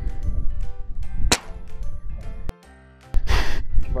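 A single shot from a .22 Sumatra PCP air rifle about a second in, a short sharp report, with wind rumbling on the microphone. A couple of seconds later comes a short burst of hiss.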